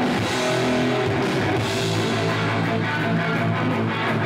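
Punk rock band playing live: two electric guitars and a drum kit at full band volume.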